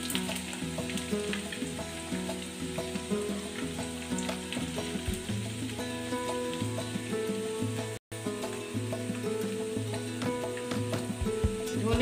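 Sliced onions frying in hot oil in a nonstick pan, sizzling and crackling steadily, with a brief dropout about eight seconds in.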